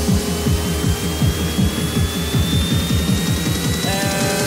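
Electronic dance music build-up: a quick run of falling bass hits under one high tone that rises slowly, leading back into a dubstep section.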